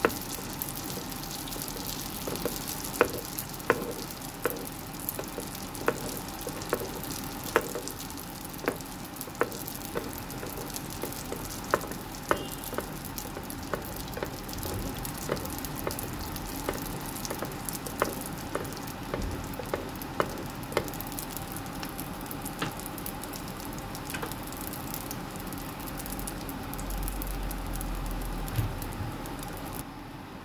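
Sfenj dough fritter deep-frying in hot oil in a frying pan: a steady sizzle broken by sharp pops every second or so.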